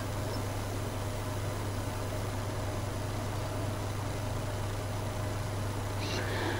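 A steady low hum with an even hiss over it, unchanging throughout.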